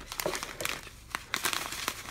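Crinkling and rustling of a foil-backed plastic pouch being handled and lifted out of shredded-paper filler in a cardboard box, with irregular sharp crackles.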